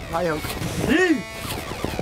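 A man's voice starting a countdown with a short word and then calling out "three" about a second in.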